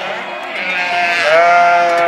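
A large flock of sheep bleating, many overlapping calls with one long, steady bleat in the second half. These are ewes and lambs calling to find each other in the pen, lambs seeking their mothers to suckle.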